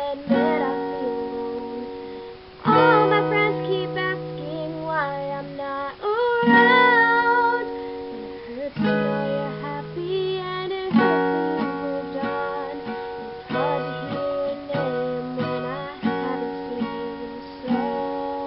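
A woman singing with her own strummed steel-string acoustic guitar, capoed, in a solo acoustic song: chords change every second or two under her sung phrases.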